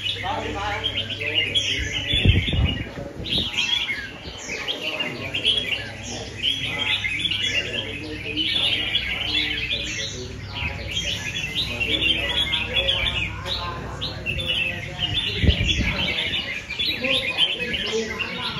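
Many caged red-whiskered bulbuls singing and chirping at once in a dense, overlapping chatter, with two short low thumps, one about two seconds in and one later.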